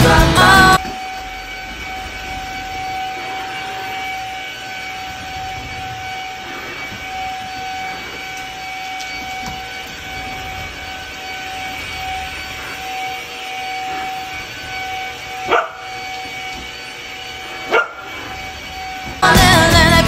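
Stick vacuum cleaner running with a steady motor whine as it is pushed over a wooden floor. A bernedoodle puppy gives two short barks near the end.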